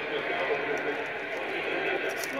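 Indistinct male speech from a television football broadcast playing in the background.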